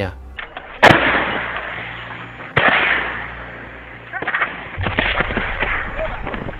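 Two heavy shell explosions about a second and a half apart, each a sudden blast trailing off in a long rumble, followed by a flurry of sharp cracks over a low rumble.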